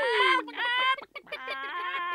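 A group of hens clucking, several calls overlapping, with a short break about a second in.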